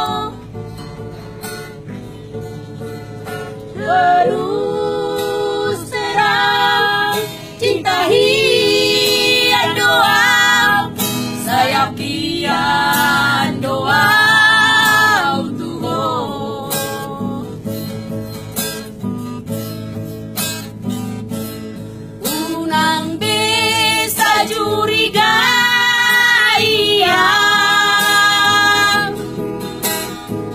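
Several women singing a Batak pop song together to acoustic guitar. The singing comes in phrases, with a quieter stretch of guitar between them near the middle.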